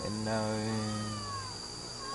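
A man's voice holding a long, drawn-out hesitation sound at a steady low pitch for almost two seconds, between phrases of speech.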